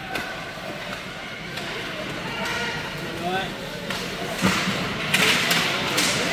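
Live ice hockey play from rinkside: skates scraping the ice, with sharp clacks and knocks of sticks and puck, one clear knock about four and a half seconds in. Faint voices from the crowd sit underneath.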